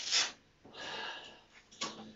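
A man breathing hard, worn out after a heavy exercise set: a sharp breath at the start and a longer one about a second in. A short click near the end.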